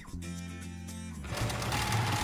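Professional-grade straight-stitch sewing machine starting up about a second in and running steadily as it stitches heavy cotton canvas, over background music.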